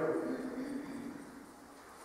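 The end of a man's spoken phrase fading out over the first half-second, then a short pause with only faint room tone.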